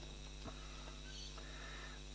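Quiet room tone with a steady low electrical hum and two faint light clicks, one about half a second in and another a little past the middle.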